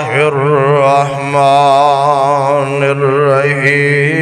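A man chanting Quranic recitation in a drawn-out melodic style, holding long notes with a wavering, ornamented pitch.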